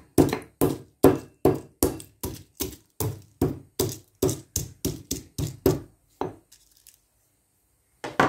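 Stone pestle pounding whole spices, star anise among them, in a stone mortar: a steady run of knocks about two and a half a second, stopping about six seconds in.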